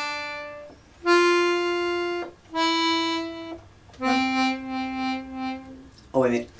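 Hohner piano accordion playing held single notes: a note dying away, then three more. The first two are steady; the last and lowest, from about four seconds in, wavers in loudness, a bellows vibrato made by working the bellows gently rather than pulling firm.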